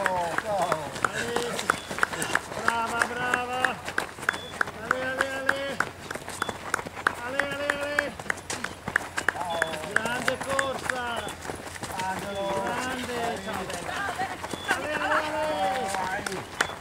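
Spectators shouting encouragement to passing runners: short cries and drawn-out calls, several held on one note for about half a second, repeated all through. Runners' footsteps on a gravel road run underneath as many sharp ticks.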